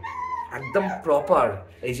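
A dog whining, with a high drawn-out whine right at the start, under a man's talking.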